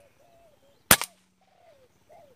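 A single sharp report of a PCP air rifle firing, about a second in. Faint soft dove coos come before and after the shot.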